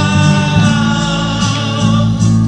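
A live worship song: acoustic guitar and other instruments with voices singing held notes.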